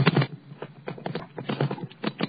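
Bicycle rattling and knocking as it rides over uneven pavement: a fast, irregular clatter, loudest at the very start.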